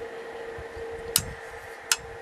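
Two short, sharp metallic clicks, about a second in and again near the end, from a loose screw handled in the metal cover of a CB radio, over a steady low hum.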